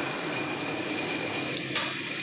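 Forklift engine running steadily, with a faint steady whine above it, as it takes the weight of a clamped stack of steel sheets.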